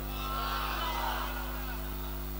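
Steady electrical mains hum from a microphone and sound system. Faint background voices rise briefly in the first second and a half.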